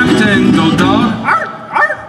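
Celtic folk band playing live: fiddle melody over acoustic guitar, electric bass and bodhrán. Near the end the low accompaniment drops out briefly, leaving a few sliding high notes.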